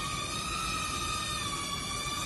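Small toy UFO drone's propellers giving a steady high whine, the pitch wavering slightly as it hovers.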